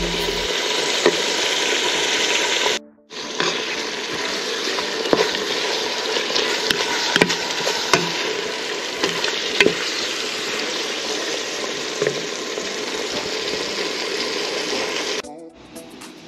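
Ground beef and diced red onion sizzling as they brown in a large pot, with a wooden spoon stirring and scraping through the meat in scattered clicks. The sizzle breaks off briefly about three seconds in and drops away near the end.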